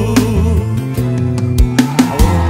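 Sertanejo song by a vocal duo and band, with guitar prominent and a brief sung word about halfway through.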